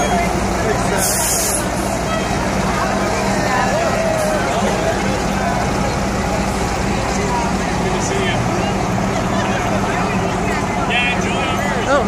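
Charter coach's diesel engine running steadily with a low hum, under a crowd chattering and cheering; a short hiss about a second in.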